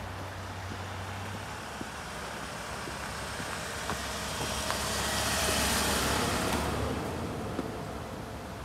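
A Hyundai minivan driving past on a narrow asphalt road, its tyre and engine noise swelling to a peak about five to six seconds in and dying away soon after.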